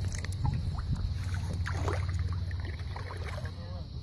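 Faint drips and small splashes of water over a steady low rumble.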